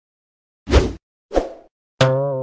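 Two short noisy bursts about half a second apart, each dying away within about a third of a second, the first louder.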